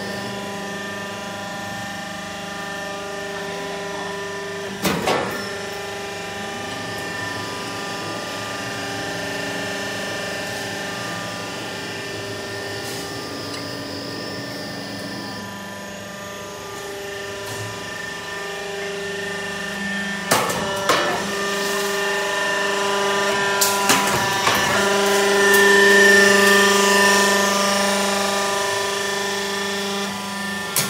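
Z purlin roll forming machine running: a steady machine hum made of several even tones, with sharp knocks about five seconds in and a cluster of them past the middle, growing louder near the end.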